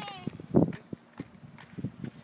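A young child's high-pitched call, falling in pitch, right at the start, followed by irregular knocks and thumps. The loudest thump comes about half a second in.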